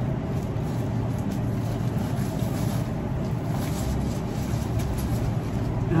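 A steady low rumble of background noise, with faint rustling of eucalyptus foliage and flower stems being handled in a bouquet.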